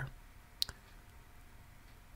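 A single short, sharp click about half a second in, with a faint second tick right after it, over low room tone.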